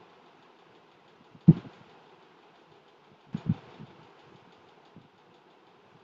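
A few dull low thumps over a steady background hiss: a strong one about a second and a half in and a quick double one about three and a half seconds in.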